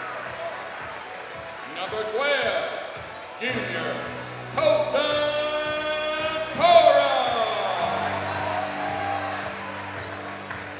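Gymnasium PA during starting-lineup introductions: music and long, drawn-out voice calls echoing through the hall, with sudden loud swells about three and a half, four and a half and seven seconds in.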